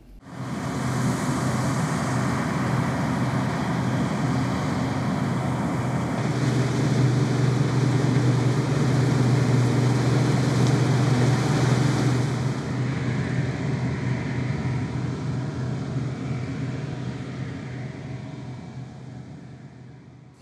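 Claas combine harvester running as it cuts wheat: a steady engine hum under a mechanical noise. It swells about six seconds in and fades away toward the end.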